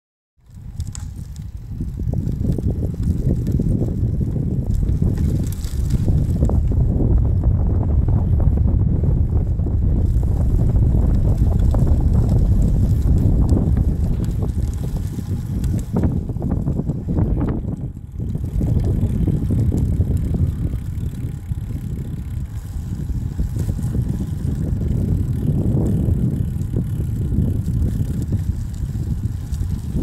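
Wind buffeting the microphone: a loud, uneven low rumble that swells and dips throughout, with a brief dip just before the 18-second mark.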